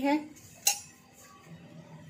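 A single sharp clink a little under a second in: a plastic measuring cup knocking against a steel saucepan of sugar.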